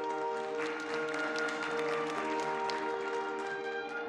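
A live pit orchestra playing music in held chords of sustained notes. A scattering of short, sharp clicks sounds over it during the first three seconds.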